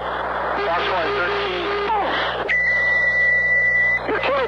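F-15 cockpit radio and intercom audio: a steady hiss with a faint, garbled radio voice in the first half, then a steady high-pitched tone that comes on about two and a half seconds in.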